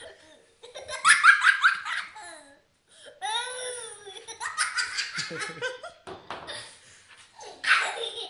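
A young child's belly laughter, coming in several bursts with short breaks between them. The loudest fit is about a second in.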